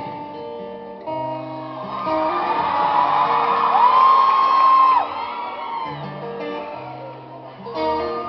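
Acoustic guitar playing a slow intro of held, picked notes through a hall's PA. Audience screams and cheers swell over it from about two seconds in, with one long high scream that cuts off about five seconds in.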